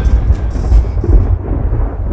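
A deep, thunder-like rumble heavy in the bass, with its higher crackle thinning out in the second half.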